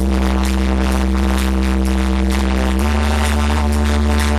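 Electronic dance music from a DJ set playing loud over a club sound system, with a steady beat and a sustained bass note that steps to a new pitch about three seconds in.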